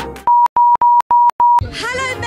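An electronic bleep tone at one steady high pitch, sounded five times in quick succession with brief silences between, followed near the end by voices starting up.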